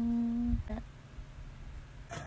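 A voice holding a steady hummed note for about half a second, followed by a brief short note, then faint room noise.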